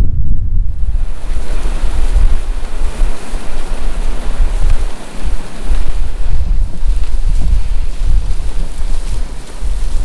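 Heavy wind buffeting the microphone of a camera mounted on the outside of a moving vehicle: a loud, unsteady low rumble, joined about a second in by a steady rushing hiss.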